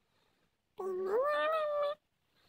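A single drawn-out meow, rising in pitch and then held, lasting about a second, starting just under a second in.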